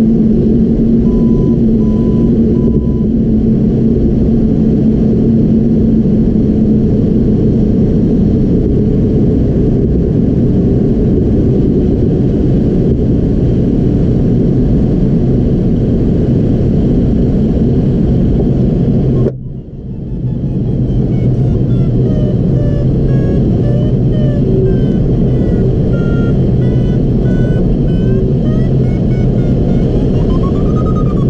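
Steady rush of airflow over a Ka6-CR glider's cockpit, heard from inside, with an electronic variometer beeping over it. The noise drops out briefly about two-thirds of the way in, and after that the variometer's beeps step up and down in pitch.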